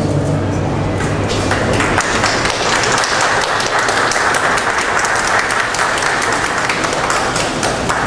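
Audience applauding: many hands clapping at once, swelling about two seconds in and thinning out near the end.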